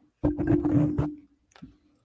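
A man clearing his throat with a rough cough, one burst about a second long, then a short catch near the end.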